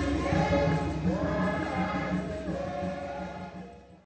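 A choir singing as closing music, getting gradually quieter and fading out near the end.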